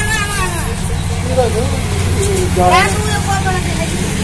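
Steady low hum of an engine running at idle, with people's voices over it.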